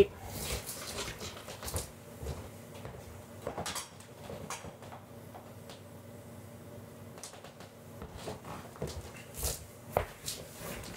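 Scattered soft knocks and handling noises as a person gets up from a desk chair, walks off and repositions a lamp on its stand, with a faint steady hum underneath.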